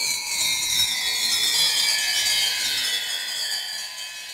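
A chapter-break sound effect: a noisy sound with a few tones in it that slide slowly downward in pitch, fading out near the end.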